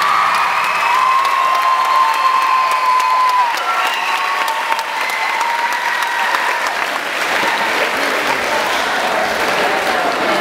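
A large crowd of students applauding and cheering, with dense steady clapping. About a second in, a long high-pitched cheer is held over the clapping for two or three seconds.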